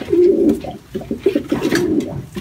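Domestic pigeon cooing in low, drawn-out notes, one near the start and another through the second half, with a few light knocks in between.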